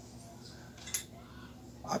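Quiet room tone with a faint low hum and one short click about a second in, as a television circuit board is handled.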